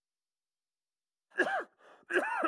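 Dead silence for over a second, then about one and a half seconds in a person's short startled exclamation, the voice sliding up and back down in pitch.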